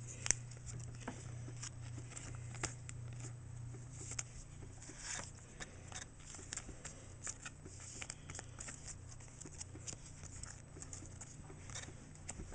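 Pokémon trading cards being handled and slid into a clear plastic sleeve: faint scattered clicks and rustles of card and plastic over a low steady hum.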